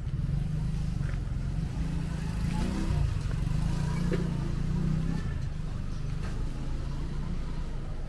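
Street traffic: a motor vehicle's engine passes close, rising in pitch a couple of seconds in, loudest through the middle and fading toward the end.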